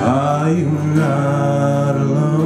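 A man singing drawn-out notes over a strummed acoustic guitar: he slides into the first note, then holds a long, slightly wavering note from about a second in.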